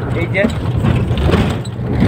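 Steady low rumble of a moving vehicle heard from inside a crowded cabin, under people talking.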